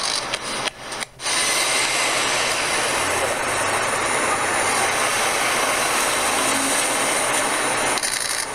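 Steady city street noise with a brief drop-out about a second in.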